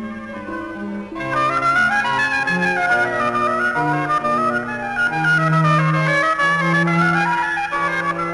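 Background music of held notes from several instruments moving in steps, growing fuller and louder about a second in.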